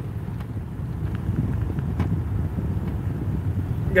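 Low, steady rumble of a car heard from inside its cabin, with a few faint ticks.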